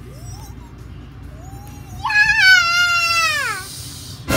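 A child's long, high-pitched wail, held for about two seconds and then falling away in pitch. A shorter rising cry comes just before it.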